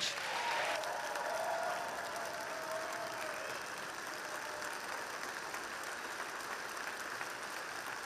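Audience applauding steadily, easing off slightly after the first couple of seconds.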